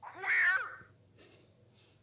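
A single short meow-like call, lasting under a second at the start.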